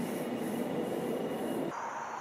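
Steady soft hiss of background noise with faint high swishing, which drops abruptly to a quieter hiss near the end.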